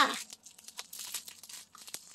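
Plastic packaging being torn open and crinkled by hand, in irregular small crackles.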